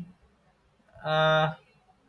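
A man's voice holding one steady, drawn-out hesitation syllable for about half a second, after a short pause.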